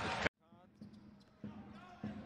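Basketball TV broadcast audio: a commentator's voice over arena noise cuts off abruptly a fraction of a second in. Much quieter court sound follows, with faint voices and a few ball bounces.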